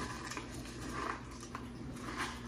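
Faint stirring of dry kibble and wet dog food with a plastic spoon in a metal dog bowl, with a few soft clicks.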